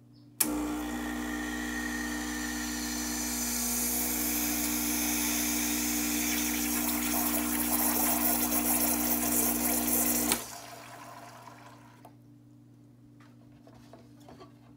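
Gaggia Classic espresso machine's vibratory pump running for a timed ten-second pull, a steady buzzing hum with water hissing through the group into a cup. It starts abruptly about half a second in and cuts off sharply with a click about ten seconds later.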